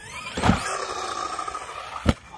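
Losi DBXL-E 2.0 electric buggy's motor whining up in pitch as it accelerates, with a hard thump about half a second in as it hits the wooden jump ramp. A steady high whine follows while it is airborne with the wheels spinning free.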